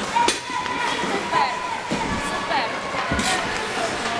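Ice hockey rink ambience in a large echoing hall: scattered voices of players and onlookers, with two sharp knocks, one just after the start and one near the end.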